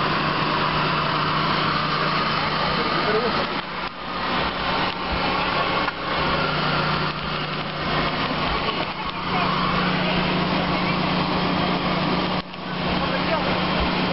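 Steady engine noise with a low drone, mixed with indistinct voices; it drops out briefly a few times, about four, six and twelve seconds in.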